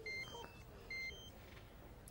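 Mobile phone ringing: a short electronic ringtone phrase of a few quick high beeps stepping in pitch, played twice, announcing an incoming call.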